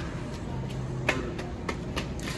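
Supermarket background noise: a steady low hum under a general store din, with one sharp tap about a second in and two fainter taps after it.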